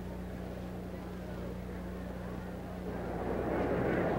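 Steady low electrical hum and hiss of an old film soundtrack, with a faint wash of noise swelling near the end.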